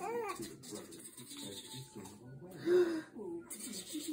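A baby's short, high vocal calls, rising and falling. The loudest comes a little before three seconds in.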